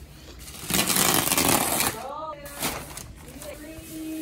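Plastic wrapping film on a roll of artificial turf being torn and rustled for about a second, loudly. A brief wavering pitched call follows, then a held tone near the end.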